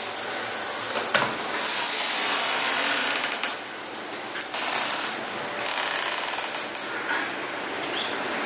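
Brewery machinery running loud, a dense rattling hiss that swells and eases in stretches.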